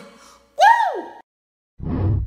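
A woman's high-pitched vocal exclamation, a single 'ooh' that rises and then falls in pitch for about half a second. Near the end comes a short, low, dull boom, the TikTok end-card sound.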